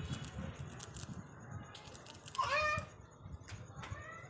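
Rose-ringed parakeet (Indian ringneck) giving one short call that rises and then holds, a little past halfway through, among scattered light clicks.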